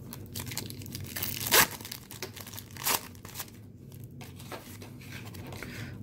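Wax-paper wrapper of a football card pack being torn open and crinkled by hand, with two sharp rips about a second and a half apart amid lighter crackling.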